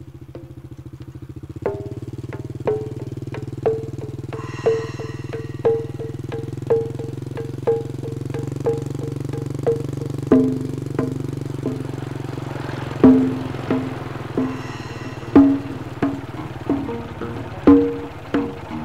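Film trailer soundtrack of percussive music: dry, wood-block-like strikes about once a second, quickening to about two a second, over a steady low rumbling drone. A brief high shimmer comes in twice, and the loudest strikes fall near the middle.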